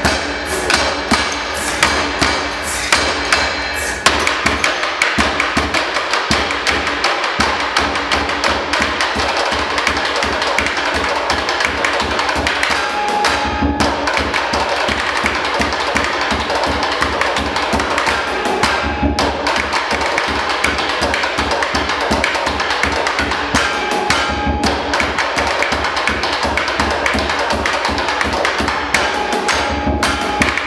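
Percussion ensemble playing drumsticks on plastic beer crates, the glass bottles inside them, and a plastic barrel, giving a mix of clicking, knocking and clinking strikes. It starts with separate accented hits and after about four seconds turns into a fast, dense, unbroken rhythm.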